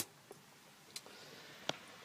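A power switch clicking as the HHO hydrogen generator is switched on: a small click about a second in and a sharper one near the end. A faint steady hiss follows the first click.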